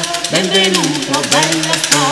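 Renaissance vocal ensemble singing a fast, syllable-packed passage, with crisp rapid consonants about ten a second, over a steady low note.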